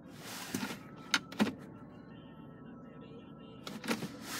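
Two light clicks about a quarter second apart, a second in, inside a car cabin, over a faint steady hum. A soft breathy rush comes at the start and again near the end.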